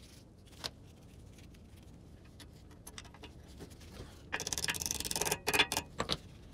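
Metal hardware being worked on at a brake caliper: a single small click about half a second in, then a dense rattling scrape of metal on metal for about a second and a half near the end.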